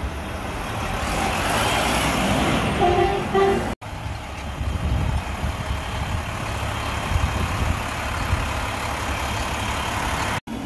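Mack garbage truck's diesel engine running close by with a steady low rumble. In the first three seconds a hiss swells up and a short two-part squeal sounds, then the sound cuts out for an instant just before four seconds in.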